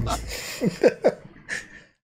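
A short laugh: three quick syllables falling in pitch about half a second in, followed by a breath.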